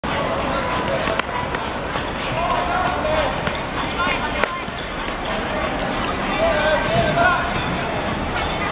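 Football match sounds: the ball being kicked, with sharp thuds about a second in and again past four seconds, while players shout calls to one another, loudest near the end.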